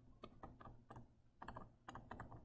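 Faint, irregular clicks and taps of a stylus writing on a tablet screen.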